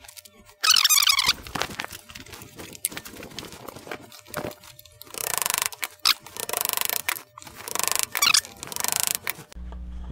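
Bar clamps and wooden jig pieces being handled and released on a table-saw sled: clicks, knocks and clatter of metal and wood, a short squeal about a second in, and two stretches of fast rasping, one around the middle and one near the end.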